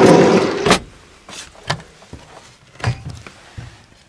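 A solid-wood drawer sliding in its runners for under a second, ending in a sharp knock, then a few lighter clicks and knocks as a wooden cabinet door is opened.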